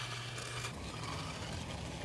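Steel edging trowel scraping softly back and forth along the edge of wet concrete, over a steady low engine-like hum.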